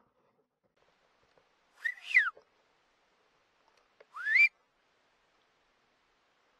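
Two short, loud whistles about two seconds apart: the first rises and then falls, the second sweeps upward.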